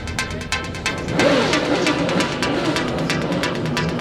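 Electronic background music with a steady fast beat, which swells louder and fuller about a second in.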